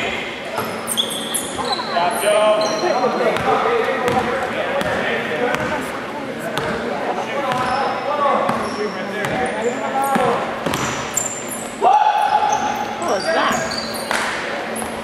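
A basketball being dribbled on a hardwood gym floor, with sneakers squeaking in short high chirps and indistinct shouts from players and spectators echoing in the hall; a louder call rings out about twelve seconds in.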